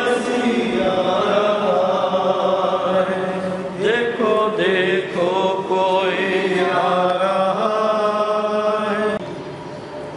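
Hymn sung by voices in long, held melodic lines, carrying on steadily and stopping about nine seconds in.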